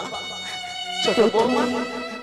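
Stage accompaniment music: an instrument holds steady, buzzy notes rich in overtones. A voice joins about a second in.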